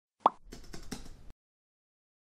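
Animated intro sound effect: a single short pop, then a quick run of soft clicks lasting under a second.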